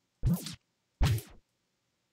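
Two brief snippets of a house drum track played back from the software, each starting on a hard hit and cutting off within half a second, the second following about a second after the first.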